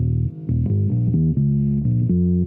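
Epiphone EB-0 short-scale electric bass played through a Zoom G1Xon processor with the tone knob fully down: a bass line of plucked notes, about four or five a second, dark and warm with almost no treble.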